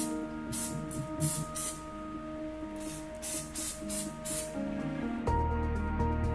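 Cooking-oil spray being spritzed in short hissing bursts, about ten quick sprays in two runs, over background music.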